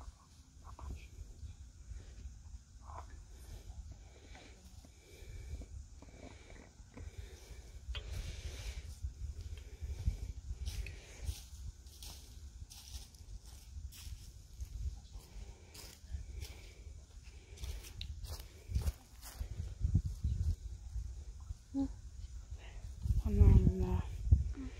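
A low rumble on the microphone, with scattered rustles and small snaps from leaf litter and twigs underfoot. A voice is heard briefly near the end.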